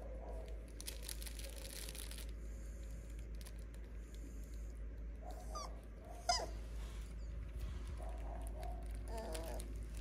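Five-week-old Cavapoo puppies giving brief high squeaks and yelps: a short one about five and a half seconds in, then a sharper, louder yelp just after, and a few softer whines later. Some rustling comes near the start.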